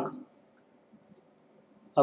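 A man's voice trails off at the start and starts again near the end. In between, a few faint ticks of a pen or stylus writing on a tablet.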